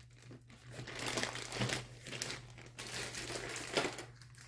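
A plastic zip-top bag crinkling and rustling as it is handled, in a run of irregular crackles.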